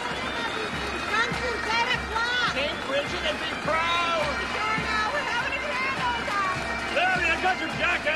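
Street parade sound: many voices calling and shouting over band music with a steady low drum beat, about two beats a second.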